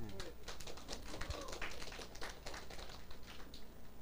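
A lecture-room pause filled with quick scattered clicks and small knocks, with faint murmuring voices from the audience.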